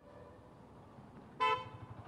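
A vehicle horn gives one short toot about one and a half seconds in, over faint outdoor street noise.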